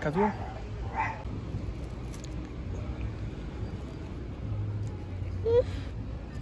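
Steady low wind rumble on a phone microphone outdoors, with a short vocal sound about a second in and another near the end.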